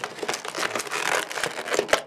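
Clear plastic packaging crinkling and crackling in a dense run as hands rummage in it to pick out a small accessory.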